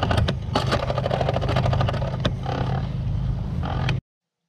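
Bicycle ridden over a bumpy dirt track, heard from a camera on the bike: a steady low rumble of wind and tyre noise, with frequent rattles and clicks from the bike over the bumps.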